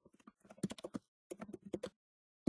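Typing on a computer keyboard: two quick bursts of keystrokes with a short pause between them.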